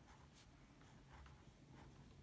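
Faint scratching of a pen writing on paper, in several short strokes.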